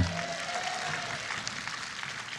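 Audience applauding, a steady patter of many hands clapping, with faint music underneath.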